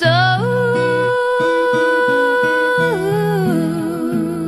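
Background song: a singer holds one long wordless note over acoustic guitar, sliding up into it and stepping down to a lower note near the end.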